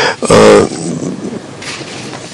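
A man's short voiced hesitation sound, a brief throaty 'uh', about half a second in. It is followed by a quiet pause in his speech.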